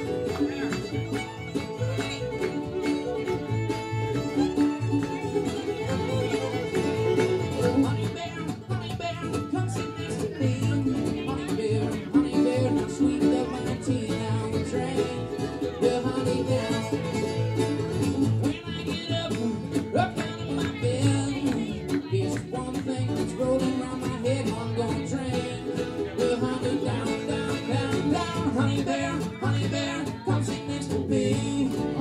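Live acoustic string band playing an instrumental passage: strummed acoustic guitar, mandolin, upright bass and fiddle, with a steady bass pulse.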